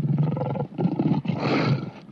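African lion roaring in three rough surges, the last one the loudest.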